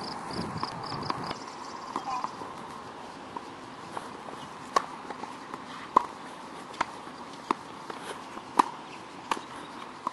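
Tennis ball being struck by rackets and bouncing on a hard court during a rally: sharp pops roughly once a second from about halfway through, the loudest near the middle and again toward the end.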